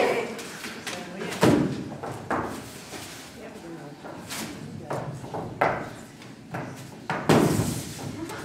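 A few scattered knocks and thumps, about five, one every second or two, among low voices in an echoing hall.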